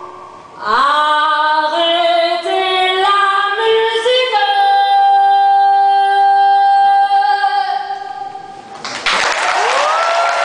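A woman sings the closing phrase of a song, her voice rising into one long held high note that fades away. Audience applause breaks out about nine seconds in.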